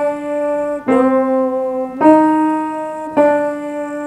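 Piano played one note at a time in a slow, even right-hand melody: three new notes struck about a second apart, each ringing on until the next.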